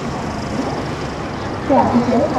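Steady riding noise from a moving motorbike: engine and wind rush over the microphone, with a voice starting near the end.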